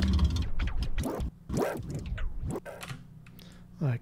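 A sample played back from recorded MIDI notes by a software sampler, in a few notes about a second long each, its pitch bent up and down.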